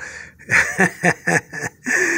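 A man laughing in a quick run of short bursts.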